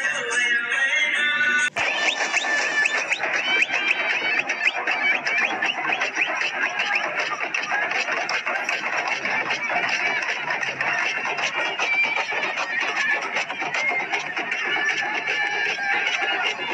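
A song plays for under two seconds and is cut off abruptly. Then comes live outdoor folk drumming: many quick drum strokes from a group of hand and frame drums, over the clamour of a crowd's voices.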